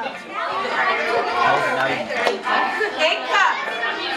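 A group of children and adults chattering, many voices talking over one another at once.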